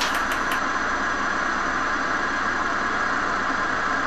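Steady hiss with a faint low hum underneath and no music or voices: the background noise of the live recording after the song has ended.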